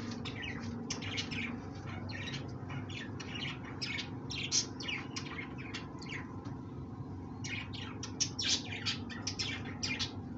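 Small birds chirping rapidly, many short high chirps a second, busiest near the end, over a steady low hum.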